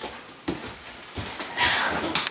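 A couple of soft knocks, then a loud, long breathy exhale near the end: a person sighing.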